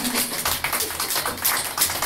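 A small audience applauding in a small room, dense irregular hand claps right after a song ends.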